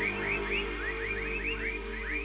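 Psychedelic downtempo (psybient) electronic music in a beatless stretch: quick rising chirps, about four or five a second, repeat over a steady low drone.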